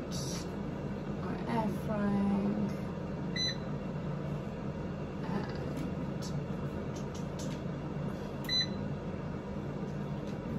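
Dual-basket air fryer running with a steady fan hum while its touch-panel buttons are pressed, giving two short electronic beeps, about a third of the way in and near the end, as the second basket is set to preheat.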